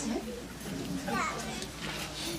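Indistinct chatter of a seated crowd, with high voices of children among it; one high voice rises and falls about a second in.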